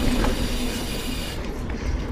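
Ibis Ripley mountain bike rolling fast down a dirt singletrack: a steady rumble of tyres on dirt and bike rattle, with wind rushing past the camera. The high hiss thins briefly near the end.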